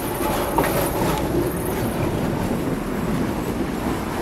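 Articulated electric tram rolling past close by and moving off, its steel wheels rumbling on the rails with a few clicks about half a second in.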